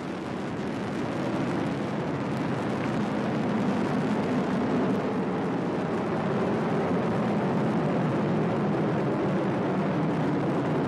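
Atlas V rocket's RD-180 main engine and solid rocket boosters burning as the rocket climbs just after liftoff: a steady, noisy rumble that slowly grows louder.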